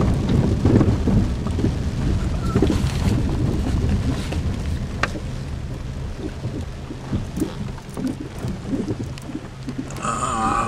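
Rain pattering on a car's windshield and body over the low rumble of the car driving, heard from inside the cabin. The rumble is heavier in the first half and eases off after about five seconds.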